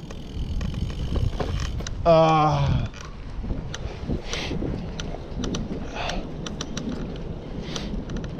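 Wind noise on the microphone and low road rumble from a bicycle riding along, with scattered sharp clicks. About two seconds in, the rider lets out a short drawn-out vocal sound, and two short hissing puffs of breath follow later.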